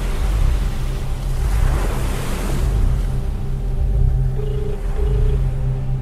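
Dark cinematic trailer score: a deep, steady low rumble with a whooshing swell about two seconds in, and faint held tones near the end.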